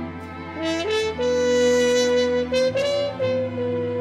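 Solo French horn playing a slow melody over a string and woodwind chamber ensemble with sustained low strings. The horn climbs in steps to a long held note about a second in, then moves through a few short notes near the end.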